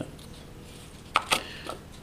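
Two short, sharp clicks about a second in, a fifth of a second apart, with a fainter one just after. They come from handling the container of bicarbonate of soda just poured into a small ceramic dish.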